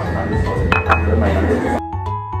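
A white ceramic coffee cup clinking twice in quick succession, a little under a second in, over busy café background noise and background music. Near the end the café noise drops away, leaving only the music.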